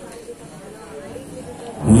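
A quiet pause with faint hall noise. Just before the end, a loud, deep rumbling sound with a voice over it starts suddenly.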